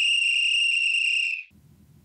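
A steady, high-pitched whistle tone inserted into the audiobook narration, lasting about two seconds and cutting off about one and a half seconds in.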